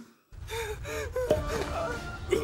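A cartoon character's voice gasping and whimpering in short strained sounds over a low rumble, starting about a third of a second in after a brief silence.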